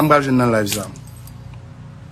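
A man's voice speaking for just under a second, then only a low steady background hum.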